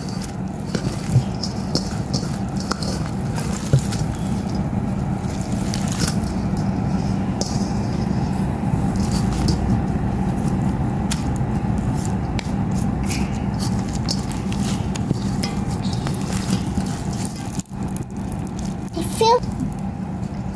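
Hands kneading and squeezing sticky foam-bead slime in a metal bowl: continuous wet squishing with many small crackles and pops, over a steady low hum. A short voice sound comes near the end.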